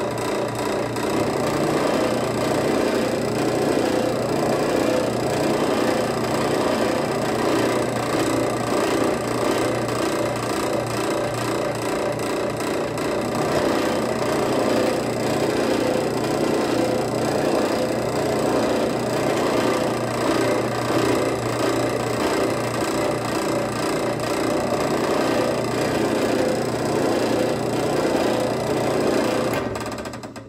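Benchtop drill press running steadily and loudly on its lowest belt speed, about 700 RPM, spinning a precision roll-crimp die while shotgun shells are pressed up into it to be roll-crimped. The motor is switched off near the end.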